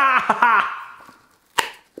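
A man laughs loudly, the laughter fading over the first second. About a second and a half in comes a single sharp snip: wire cutters cutting through the thick wire that has melted onto the transformer.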